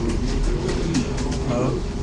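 A man's low voice in a hesitant pause between phrases, over a steady low room hum.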